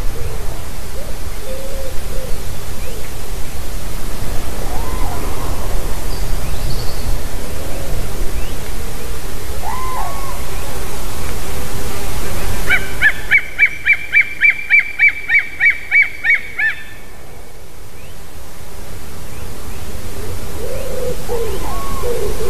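A bird calling off camera: short hooked calls repeat throughout, and about two thirds of the way in a rapid series of about a dozen high yelping notes, roughly three a second, lasts a few seconds.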